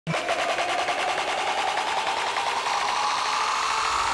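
Electronic intro build-up: a fast-pulsing synth riser whose tone climbs slowly in pitch.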